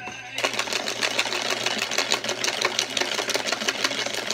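A clear plastic box being shaken to mix raffle entries, its contents rattling quickly against the walls, starting about half a second in.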